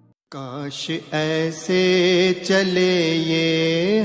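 A devotional song starts about a third of a second in: one voice sings long, held notes with ornamented turns between them.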